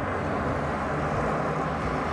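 Steady wind rush on the microphone and road noise while riding an electric scooter along a city street with traffic.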